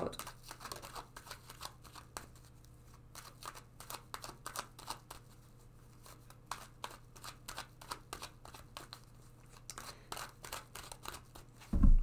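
Hands shuffling a tarot deck: a string of soft, irregular card flicks and rustles, over a low steady hum.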